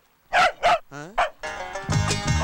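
A dog barking: two loud sharp barks in quick succession, a drawn-out lower-pitched yelp, then one more bark. Music with a steady beat comes in near the end.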